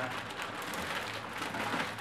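Clear plastic wrapping on a projector rustling steadily as the wrapped projector is handled and shifted across the table.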